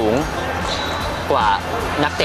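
A man speaking in short phrases over a steady background music bed.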